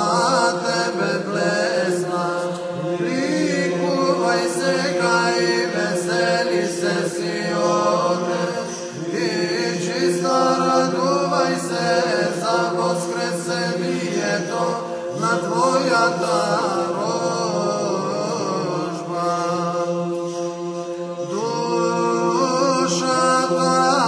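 Orthodox church chant in Byzantine style. A male voice sings a long, ornamented melismatic line, gliding between notes without clear words, over a steady held drone (ison).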